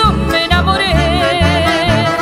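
Chamamé music: accordion, guitar and bass in a steady lilting rhythm, with a long note held with a wide vibrato through the second half.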